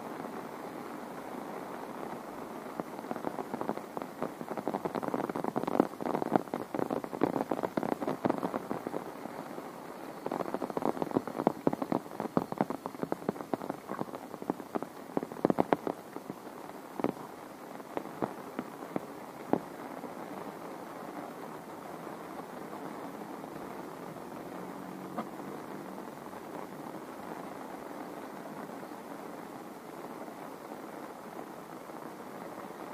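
Heavy tropical rain falling steadily. For most of the first two-thirds, loud close drops crackle over it in dense bursts, then thin out, leaving an even rain hiss.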